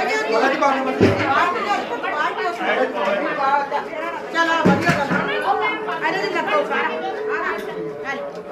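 Several women chatting at once, their voices overlapping in a lively babble. There is a short knock about a second in and a louder thump just before the five-second mark.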